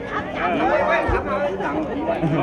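Several people talking at once, overlapping voices in a small crowd, with a low thump about halfway through.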